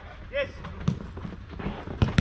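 Sharp thud of a football being kicked about a second in, followed by a couple of softer knocks and scuffs of play on an artificial pitch.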